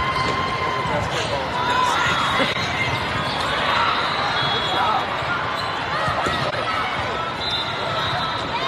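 Volleyball rally: ball contacts and shoes squeaking on the court over a steady din of voices from a large, echoing hall.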